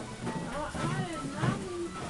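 Voices with music in the background.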